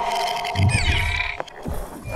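Electronic sound-design sting for an animated logo intro. A held synthetic tone fades out, then a low hit about half a second in comes with high falling swishes. Two sharp clicks follow near the end.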